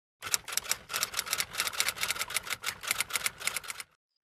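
Typing sound: quick, uneven key clicks, about eight a second, running for most of four seconds and then stopping abruptly.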